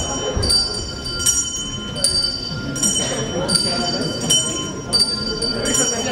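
Bell-like ringing strikes repeating steadily, about four every three seconds, over the murmur of a crowd in a hall.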